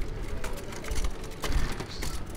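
A wheelchair being pushed over stone paving, its wheels and frame rattling with many small clicks and knocks.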